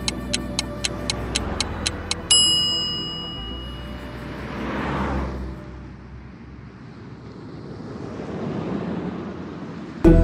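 Edited film soundtrack effects: a sharp ticking at about four ticks a second stops about two seconds in with a single bell-like strike that rings and fades. Then a whooshing swell rises and falls around the middle, and a softer one follows near the end.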